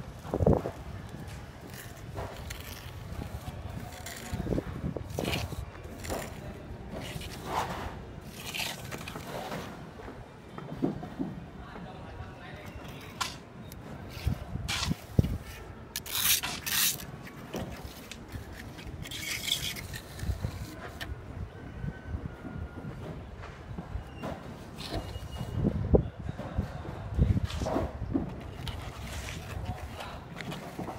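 Steel trowel and hand float scraping and rubbing over wet cement mortar as it is spread and smoothed, in irregular strokes with a few sharper taps.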